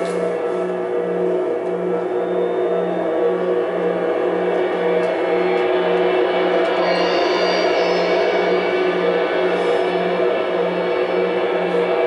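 Experimental drone music: sustained, layered ringing tones from suspended cymbals played with mallets and electric guitars through electronics, over a low tone pulsing about three times a second. A high tone joins about seven seconds in.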